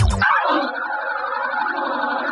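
Electronic dance music in a radio mix: about a quarter second in, the beat and bass cut out, leaving only a thin mid-range synth texture with a repeating sweep, a breakdown in the track.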